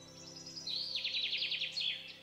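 Soft background music of held chords with bird chirps over it. A rapid, high trill of chirps starts just over half a second in and lasts about a second.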